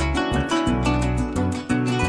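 Instrumental break of Venezuelan llanera music: a llanera harp playing quick plucked runs over electric bass and a strummed cuatro, with a fast, even rhythm.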